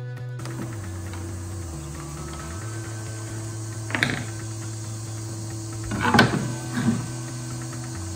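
Background music with a steady, stepping bass line, and a few brief knocks about four seconds in and again around six to seven seconds in.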